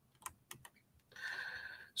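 A few faint taps on a computer keyboard, three short clicks in the first second, then a soft hiss lasting almost a second.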